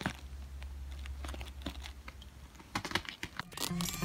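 Plastic bubble wrap crinkling and crackling as it is handled, with scattered small clicks.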